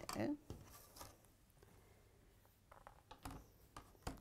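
Faint handling sounds on a tabletop: a clear plastic quilting ruler and small fabric pieces being moved about on a cutting mat, with a few light taps and rustles.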